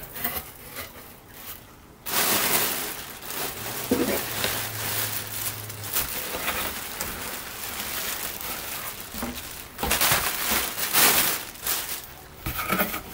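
Plastic air-pillow packing and plastic wrapping crinkling and rustling as they are handled and pulled out of a cardboard box. It starts about two seconds in, runs on steadily, and is loudest near the end.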